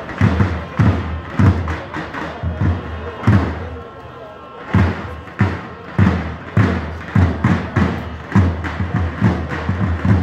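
A large davul bass drum beating in an even rhythm of about two strokes a second in traditional Turkish wrestling music, with a short break a little before the middle. A voice is heard over the music.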